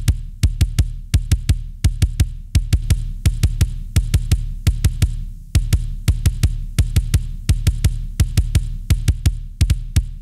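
Soloed kick drum track from a recorded drum kit playing fast runs of sharp, clicky hits, several a second, each with a low boom. It is first heard through the SPIFF transient processor, which dips a ringing resonance around 231 Hz. Partway through, the plugin is bypassed, letting the ring-out of the other drums resonating into the kick mic come back.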